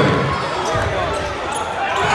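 Gym crowd at a basketball game, many voices shouting and talking over one another, with a basketball bouncing on the hardwood court during a fast break.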